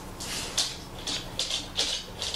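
Hands and yarn working metal circular knitting needles while knitting the first stitches off a Turkish cast-on: short scratchy rustles, about three a second, of yarn sliding and needles rubbing.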